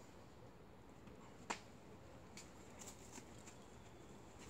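Rock-climbing shoes and hands scuffing and tapping on a granite boulder as a climber moves: one sharp click about a second and a half in, then a few fainter ticks, over near silence.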